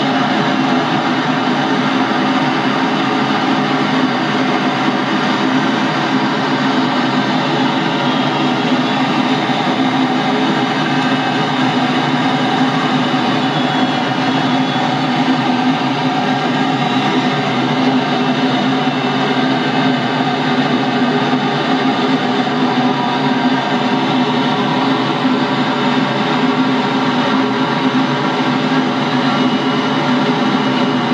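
Steady drone of a light aircraft's engine and airflow heard from inside the cockpit, unchanging throughout.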